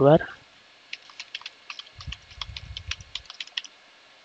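Computer keyboard typing, about a dozen quick keystrokes over roughly three seconds, with a faint low rumble around the middle.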